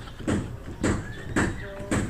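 Steps knocking on the rungs of an aluminium ladder as someone climbs down it: four even knocks, about two a second, each with a short ring.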